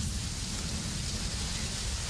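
Steady hissing background noise with a low rumble beneath, even throughout, with no distinct events.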